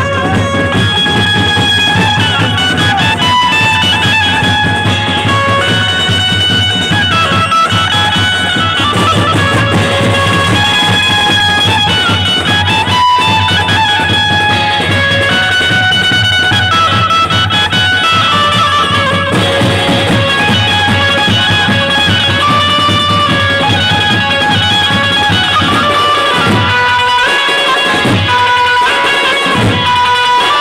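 Dhumal party band playing Gondi dance music, amplified through a loudspeaker stack: a melody of held, stepping notes over a steady bass and drums, with the low end cutting in and out near the end.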